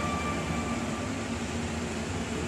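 A steady background hum with even noise and no distinct events.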